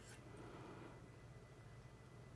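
Near silence: room tone with a low steady hum, a faint click at the start and soft handling noise about half a second in, as hands turn a steel toe plate on the wheel hub.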